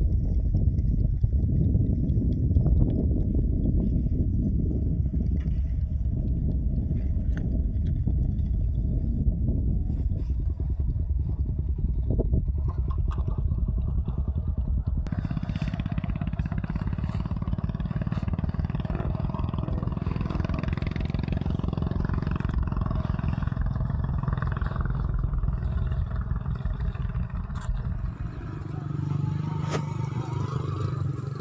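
Motorcycle engine running steadily while riding, a dense low rumble mixed with wind noise on the microphone.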